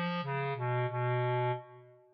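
Bass clarinet playing a melody line: a few short notes stepping down, then a lower note held for about a second that fades away as the line reaches a rest.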